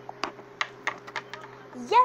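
Plastic toy figures tapped and set down on a wooden tabletop: a quick series of about seven light, irregular clicks, over a steady low hum.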